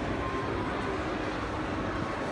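Steady, even background noise of a shopping-centre concourse, with no single distinct source standing out.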